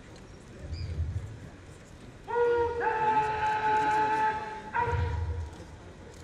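A brass horn holds one long steady note for about two and a half seconds, starting about two seconds in, then cuts off and sounds again briefly. Low thuds come just before and just after it.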